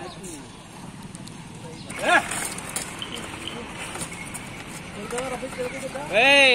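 Men's voices calling out, with one short loud shout about two seconds in, over steady street background; a horse's hooves step on asphalt as a rider mounts her.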